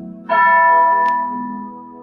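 A bell struck once a quarter second in, ringing and fading over soft, sustained keyboard music.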